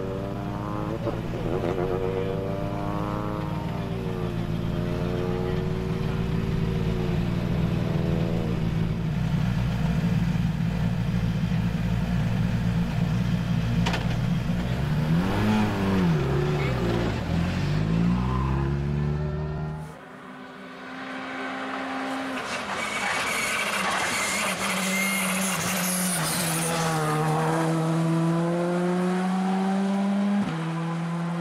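Škoda Fabia R5 rally car's turbocharged four-cylinder running with brief rises in revs, one at about two seconds and a bigger rise and fall at about sixteen seconds. After a sudden cut there is a hiss of tyre and road noise, then the engine rises steadily in pitch as the car accelerates near the end.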